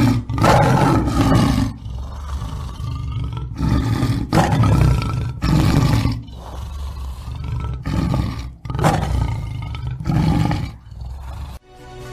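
A tiger roaring and growling in a series of loud calls, about one every second or two.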